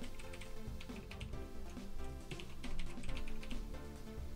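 Rapid keystrokes on a computer keyboard as a password is typed in twice, over steady background music.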